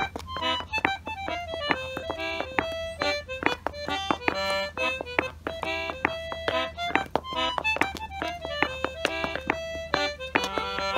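A concertina playing a folk tune, its reedy notes changing quickly, with the sharp taps of clog-dance steps on brick paving throughout.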